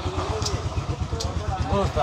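An engine running steadily with a rapid, low, even pulse, with men talking over it and a couple of sharp clicks.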